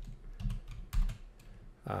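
Keystrokes on a computer keyboard: a handful of separate, irregularly spaced taps as a line of code is edited.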